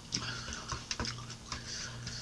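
Scattered soft clicks of eating: a metal fork cutting omelet and tapping on a clear plastic tray, along with mouth sounds of chewing.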